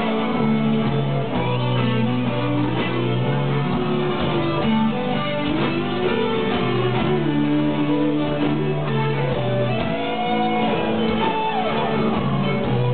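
Live rock band playing, with guitars to the fore and sustained notes, some of them sliding in pitch.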